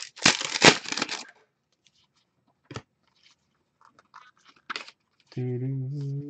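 A foil trading-card pack is torn open with a loud crinkling rip in the first second. Quiet clicks and rustles of the cards being handled follow. Near the end a man's voice hums one long steady note.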